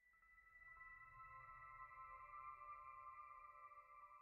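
Faint ambient music fading in: several sustained high tones held steady and slowly swelling, with a soft low hum beneath.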